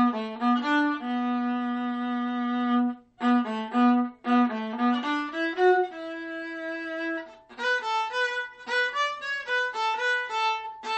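Solo viola playing a bowed melody: a long held low note and short detached notes, with brief breaks about three and four seconds in, then quicker, higher notes over the last couple of seconds.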